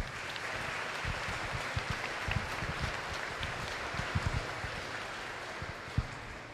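An audience applauding steadily, the clapping tapering off near the end.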